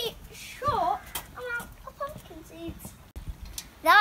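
Children's voices talking quietly in short fragments, with louder speech starting near the end.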